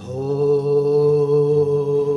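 A man's voice sings one long, steady held note, entering at the very start. It is a slow devotional vocal line of a carol, with soft guitar accompaniment beneath.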